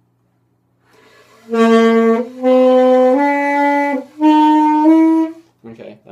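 Alto saxophone played by a beginner: a rising run of held notes, the G, A, B, C fingering sequence, blown in three breaths with short gaps and the pitch stepping up within them.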